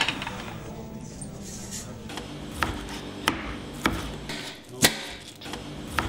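Scattered sharp knocks and clinks of crockery and kitchen utensils, about five in all at uneven intervals, with the loudest near the end.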